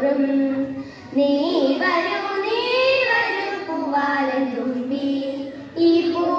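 A group of children singing a song together, phrase by phrase, with short breaths between phrases about a second in and near the end.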